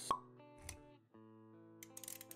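Motion-graphics sound effects: a sharp pop with a short ringing tone about a tenth of a second in, and a second short hit just after half a second. About a second in, soft background music with sustained notes comes in.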